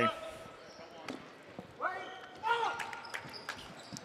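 Dodgeballs striking the gym floor and walls in scattered sharp knocks, echoing in a large hall, with faint shouting from players on the court.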